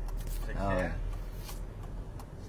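Inside a moving car: a steady low road rumble, with a brief faint voice just under a second in and a few light clicks or rustles.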